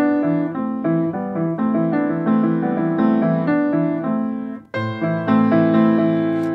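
Piano played in chords, a new chord struck every half second or so, the thumbs adding a moving third inside an A minor chord. The playing breaks off for an instant about three-quarters through and then carries on.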